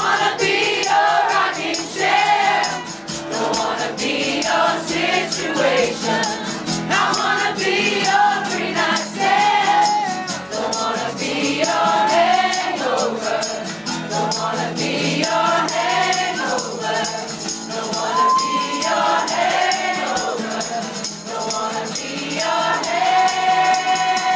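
A man and a woman singing together over a strummed acoustic guitar in a live performance, ending on a long held note.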